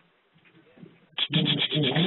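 A man's speaking voice after a pause of about a second, during which there is only faint scraping or rubbing noise.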